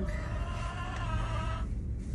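A hen giving one long, drawn-out call that stops about a second and a half in, over a low rumble of wind on the microphone.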